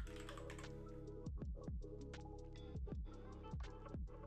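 Computer keyboard typing, a handful of irregular keystrokes, over soft lo-fi hip-hop background music.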